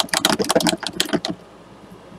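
Paintbrush rinsed in a water jar, rattling quickly against the jar's sides in a run of rapid clicks for just over a second, then stopping.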